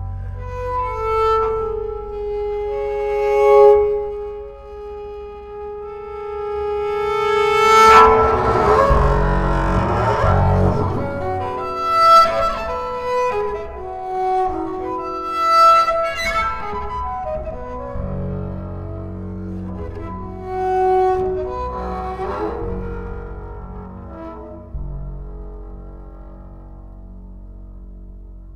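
Solo double bass bowed, playing a slow melody of long held notes over sustained low notes.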